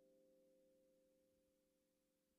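Final chord of a Seeds 41-key chromatic kalimba ringing out, its metal tines sustaining a few steady tones that fade away, very faint.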